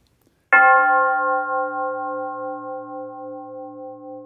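A single bell stroke about half a second in, ringing on with a slow fade and a gentle pulsing in its lower tones.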